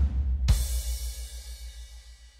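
Yamaha Genos arranger keyboard playing drum accompaniment. About half a second in, a cymbal crash with a low bass note rings out and fades away, like the end of a musical phrase.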